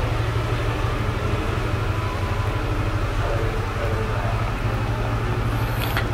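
Steady low rumbling background noise with an even hiss above it, no distinct events; it cuts off abruptly at the very end.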